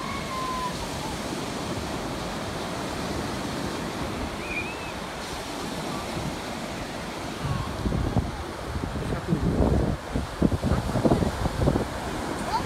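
Atlantic surf breaking and washing up a sandy beach, a steady rush. About seven and a half seconds in, wind starts buffeting the microphone in loud low gusts.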